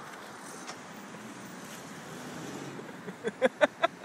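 Steady road traffic noise, with a car passing about two to three seconds in. Near the end someone starts laughing in quick repeated bursts.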